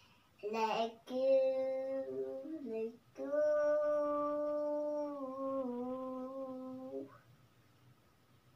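A young girl singing long held notes in three phrases, the last lasting about four seconds and stepping down slightly in pitch partway through.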